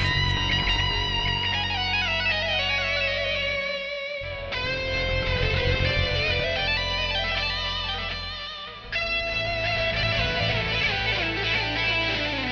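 Electric guitar intro music: ringing chords that change about every four to five seconds, with bending notes gliding over them.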